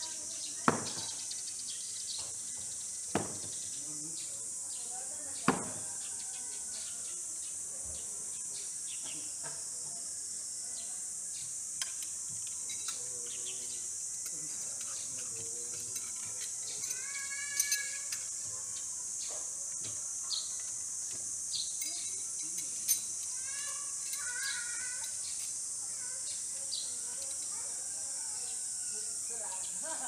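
Three thrown no-spin knives hitting a wooden log-round target, each a sharp thunk about two to three seconds apart in the first six seconds. Later come light metallic clinks and rings as the knives are pulled from the wood and handled. A steady high insect drone sits behind it all.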